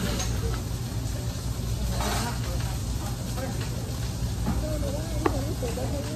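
Restaurant ambience: indistinct background voices over a steady low hum, with a short hissing burst about two seconds in and a single sharp click near the end.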